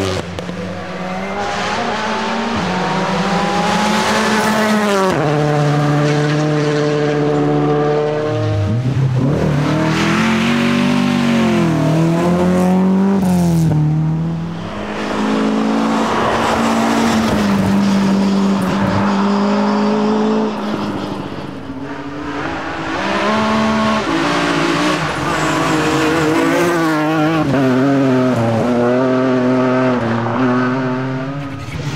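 Rally cars driven hard on a special stage: engine note climbing under acceleration and dropping sharply at each gear change or lift, again and again. The sound dips briefly about halfway and about two-thirds through before the next car builds up again.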